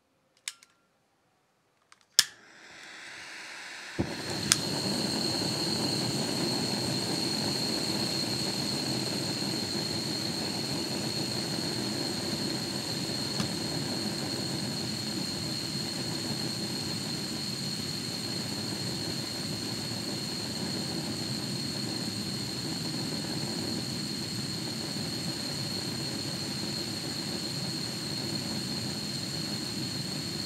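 Firebox canister gas burner with titanium flame diffuser being lit: a click about two seconds in, gas hissing, then the burner catches about four seconds in and burns with a steady roar and a steady high whistle over it, its regulator open a quarter turn.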